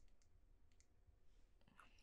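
Near silence with a few faint, short clicks: the button of a handheld presentation remote being pressed to advance the slides.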